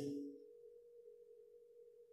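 A faint, steady hum at a single pitch. The end of a man's spoken word fades out in the first half second.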